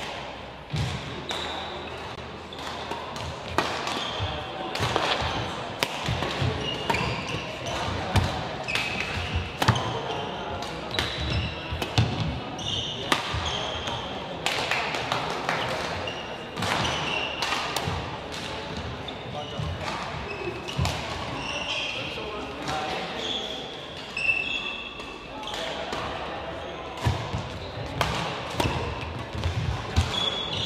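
Badminton rally: rackets striking a shuttlecock in sharp, irregular cracks, with players' shoes squeaking on the court mat and thudding footfalls, all echoing in a sports hall.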